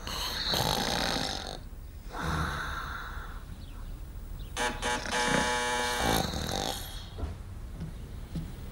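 Snoring: three long, noisy snores a couple of seconds apart, some with a buzzing pitched edge.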